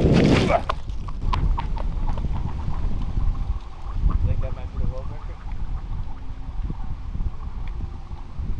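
A loud burst of noise as something is thrown, then a run of short clicks and ticks as it skids and bounces over thin lake ice, with a brief wavering tone about four seconds in. Wind rumbles on the microphone throughout.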